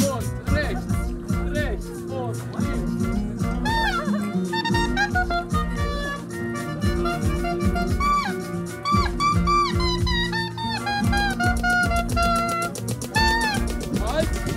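Clarinet playing a bending, ornamented melody over a steady electronic dance beat, in an electro-Balkan style. The beat runs throughout and the clarinet comes in about four seconds in.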